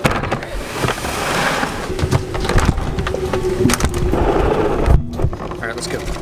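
Busy public-hall ambience, likely an airport terminal: a wash of background voices and bustle with knocks and thumps from the handheld camera, and a faint steady tone through the middle. It cuts off abruptly about five seconds in.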